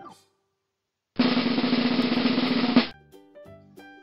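A snare drum roll lasting just under two seconds: it starts after a brief silence and stops abruptly. A few quiet music notes follow near the end.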